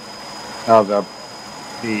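A man's voice in two short bits, over a faint steady hum with a thin, constant high whine.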